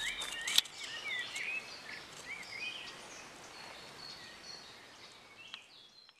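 Songbirds chirping, short high chirps over a faint background hiss, fading out toward the end; a sharp click about half a second in.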